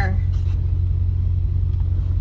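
Pickup truck's engine idling, heard from inside the cab as a steady low rumble.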